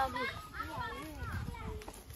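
Children's voices talking and chattering quietly, with no nearby speaker.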